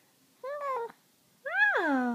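Baby's high-pitched vocal sounds: a short arched coo about half a second in, then near the end a longer squeal that rises and slides down in pitch.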